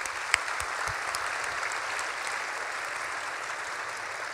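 Audience applauding, steady, easing off slightly toward the end.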